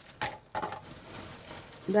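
A few short light knocks and faint rustling, then a woman's voice begins near the end.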